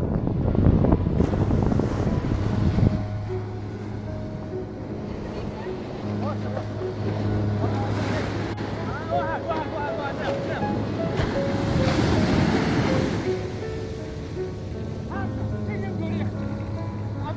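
Wind buffeting the microphone over breaking surf for the first few seconds. After that, background music of slow, held notes plays over the wash of waves on the beach.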